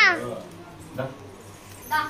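Short high-pitched cries: a loud one at the start that rises and falls in pitch, then two shorter, fainter ones about a second apart.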